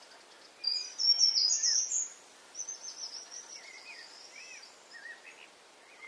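Wild songbird singing: a loud phrase of high notes stepping upward about a second in, followed by softer, high twittering and a few lower chirps.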